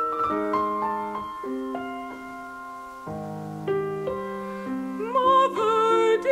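Slow piano introduction to an art song, with single notes and chords sounding and dying away. About five seconds in, a mezzo-soprano voice enters, singing with a wide vibrato over the piano.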